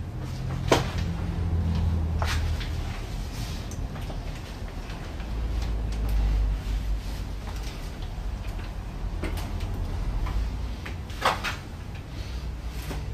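Four sharp knocks and clunks of things being handled, spread across a low steady hum, the loudest knock near the end.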